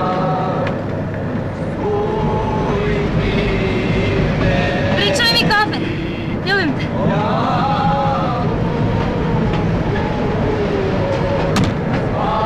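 Film soundtrack: the steady low rumble of a moving train under several voices singing and calling, with high warbling cries about five and six and a half seconds in.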